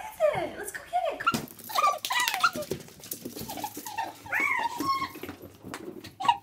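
A small dog whining and yelping in short, rising and falling calls while being coaxed to do a trick for a treat, with a person's voice mixed in.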